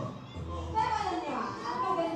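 Several people talking and calling out over one another in a hall, their voices high-pitched.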